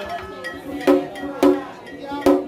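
A metal bell struck twice, about a second in and again half a second later, each hit ringing briefly with a clear pitch, over chanted singing.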